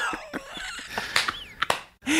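Soft, faint laughter and breathing from people around a microphone, with a couple of small clicks.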